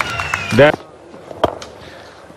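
Stadium crowd noise with scattered hand clapping, then a single sharp crack about one and a half seconds in: a cricket bat striking the ball.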